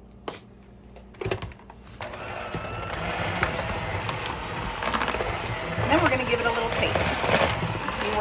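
A few soft taps, then an electric hand mixer starts about two seconds in and runs steadily, its beaters churning a thick cream-cheese and breadcrumb filling in a bowl.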